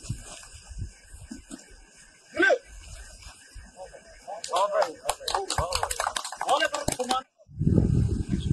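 Men's voices shouting during group drill: one loud call about two and a half seconds in, then many voices calling out together from about halfway, cut off suddenly near the end.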